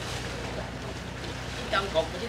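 A sand barge's engine running steadily as a low hum under a constant hiss of wind, with a short spoken word near the end.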